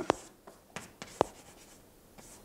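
Chalk on a blackboard: a few short, sharp taps and strokes in the first second and a half, the loudest about a second in.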